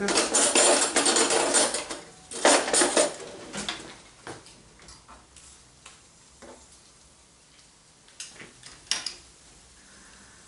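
Metal cutlery rattling and clinking as a fork is fetched, densest for the first two seconds with another burst just after, then a few scattered clinks of utensils and pots.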